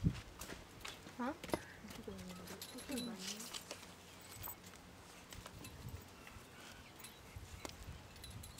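Faint scattered clinks of a bridle's metal buckles and bit as it is handled, with a few quiet spoken words in the first half.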